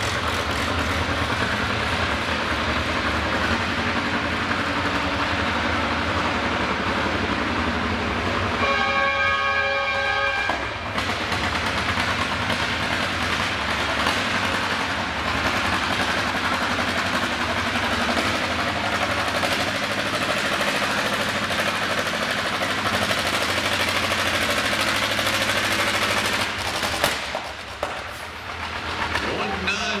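John Deere G's two-cylinder engine running hard under full load as the tractor pulls the weight-transfer sled, a loud continuous racket that drops off near the end as the pull finishes. A steady pitched tone, like a horn, sounds for about two seconds about nine seconds in.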